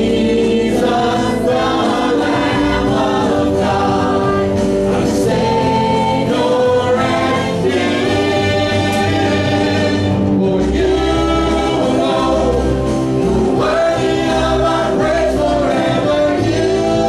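A live church worship band playing a song: several singers over keyboard, guitar and drums, with steady, continuous sound.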